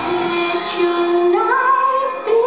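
A woman singing one long held note over backing music, the note stepping up higher toward the end.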